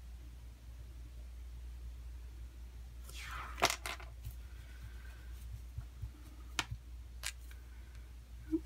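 Art tools handled on a desk over a steady low hum: about three seconds in, a short scraping rustle ends in a sharp click, and two lighter clicks follow near the end, as the water brush pen is put down.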